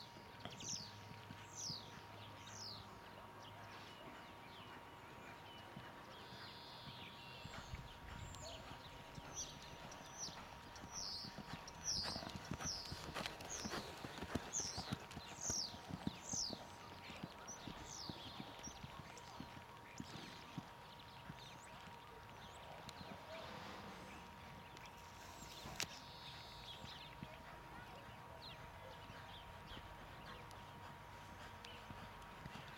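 Hoofbeats of a Friesian horse trotting under a rider on a soft sand arena, a faint, uneven run of dull thuds. Repeated high falling bird chirps sound over the first half.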